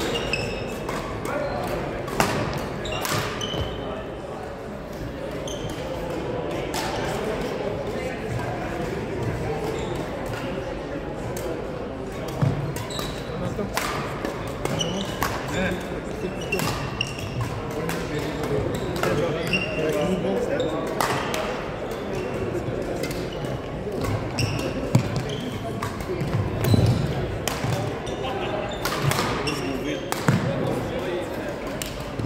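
Badminton play on a gym floor: sharp racket strikes on the shuttlecock every few seconds, short high squeaks of court shoes, and a steady murmur of voices, all echoing in a large hall.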